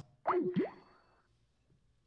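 A short boing-like sound effect about a quarter second in: a pitch sweeping down and then back up, lasting about half a second.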